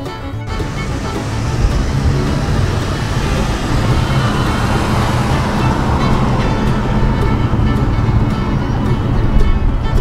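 Road and traffic noise heard from inside a moving car as it pulls away and turns through an intersection. The noise swells after the first second and stays loud. Background bluegrass music plays faintly underneath.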